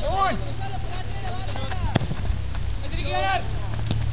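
Players' voices calling out across a football pitch during play, over a steady low rumble on the microphone, with one sharp knock about two seconds in.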